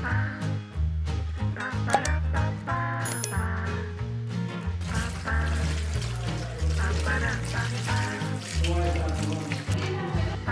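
Background music with a steady bass line. From about five seconds in, tap water runs and splashes into a collapsible silicone colander basket as vegetables are washed by hand in it.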